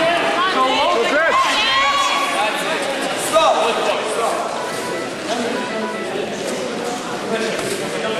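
Crowd of spectators shouting and calling out over a general hubbub of voices, echoing in a gymnasium, loudest in the first few seconds.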